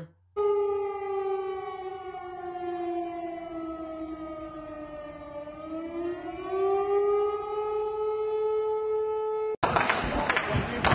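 Civil-defense siren wailing, its pitch sinking slowly and then rising again about halfway through; it cuts off suddenly near the end.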